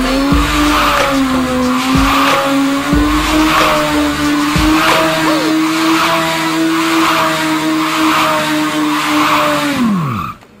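Sport motorcycle engine held at high revs while the rear tyre spins and squeals in a smoking burnout circle. The tyre noise swells about once a second. The revs fall away at the very end.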